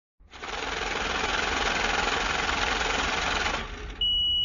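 A rapid, steady mechanical rattle used as an intro sound effect. It fades in over about the first second, holds, then fades out shortly before the end.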